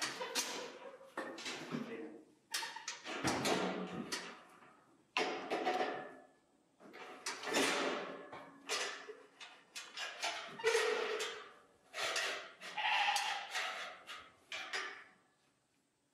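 Sheep bleating repeatedly, a dozen or so loud calls one after another.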